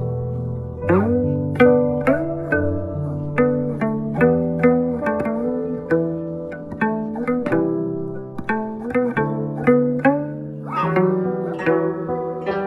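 Guzheng (Chinese plucked zither) playing a slow melody: single plucked notes ring out over low bass notes, and many are bent upward in pitch just after the pluck. The notes start about a second in, and a quicker flurry of notes comes near the end.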